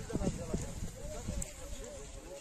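Dry chickpea plants being pulled up and handled by hand, a series of short knocks and rustles that thin out over the first second, with faint voices of people talking in the background.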